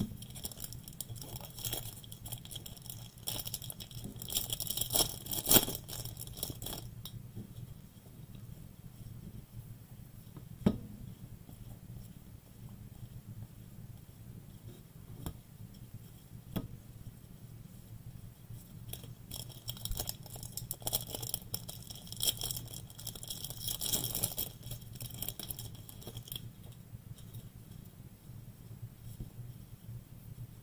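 Foil trading-card pack wrappers crinkling and tearing open, in two bouts, one at the start and one starting about twenty seconds in. Between them come light clicks and taps of cards being handled.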